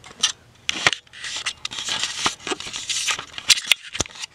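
Camera handling noise: an irregular run of scratchy rubbing and sharp clicks as the camera is grabbed, swung around and refocused close to the microphone.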